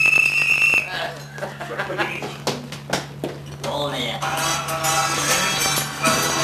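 A shrill whistle blast for just under a second, followed by music from a synthesizer keyboard, with some voices in the room.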